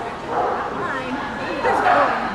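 A dog barking, the loudest bark near the end.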